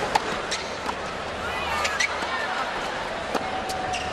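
Tennis ball struck by racket strings on a serve and in the rally that follows: several sharp, separate hits about a second apart, over a steady stadium crowd murmur.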